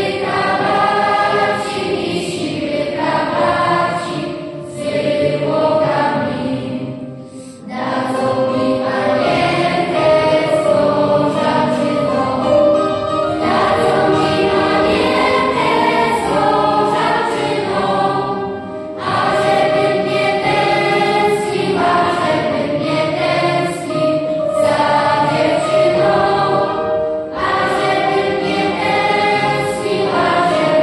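Children's choir singing a Polish song in unison with keyboard accompaniment, in sustained phrases with brief breaks between them, in a reverberant church.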